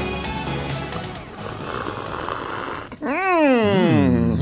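Show intro theme music that cuts off about three seconds in, followed at once by a long voiced groan or cry that slides down in pitch.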